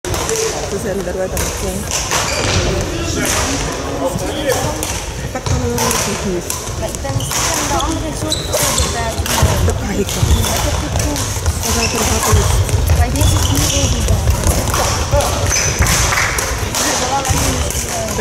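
Badminton rally in a sports hall: repeated sharp racket hits on the shuttlecock and players' footfalls on the court floor, over a constant murmur of voices from around the hall.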